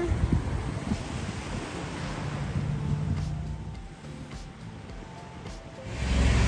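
Wind on the microphone over the wash of sea waves on the shore, with faint music underneath; it dies down over the last couple of seconds.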